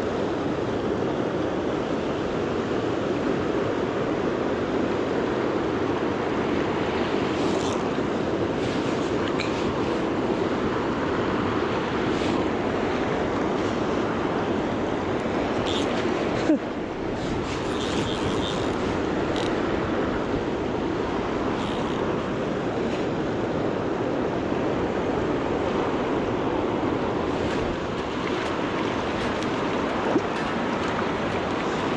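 Steady rush of a fast river running over rocks, with a few faint clicks and one short knock about halfway through.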